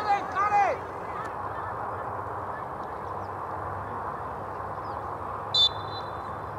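Loud shouted calls from players in the first second, then a steady background hiss, and a single short, sharp referee's whistle blast just before the end.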